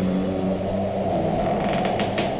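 A low steady drone, two held low tones, under a crackly hiss, typical of flexi-disc record playback between narrated lines.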